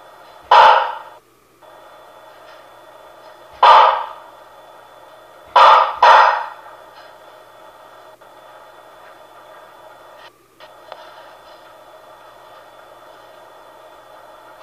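Steady static hiss from a video baby monitor's speaker, broken by four loud, sudden bursts of noise, the last two close together, each fading over about half a second. The hiss cuts out briefly twice.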